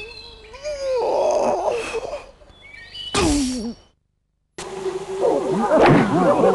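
A cartoon character's voice sighing and groaning, with a loud groan falling in pitch about three seconds in. The sound then drops out completely for a moment and comes back as a busy din of many overlapping voices.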